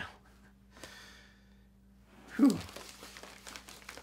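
A man's loud sighing 'whew' about two and a half seconds in, falling in pitch, followed by faint rustling and clicking of a plastic Blu-ray case being handled.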